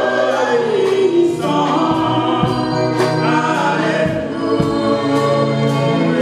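A woman singing a gospel song into a microphone over instrumental accompaniment, with sustained bass notes and a light percussive beat.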